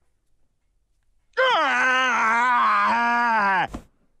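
A sleeping cartoon man's long, wavering groan, starting about a second and a half in and cutting off shortly before the end: the weird sleep-breathing thing he has.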